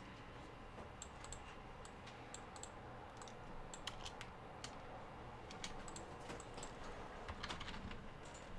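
Faint computer keyboard typing with mouse clicks, in scattered bursts of keystrokes that come thickest in the second half.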